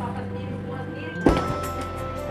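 Background music, with one sharp clunk a little over a second in as the motorcycle's seat latch releases and the seat swings open.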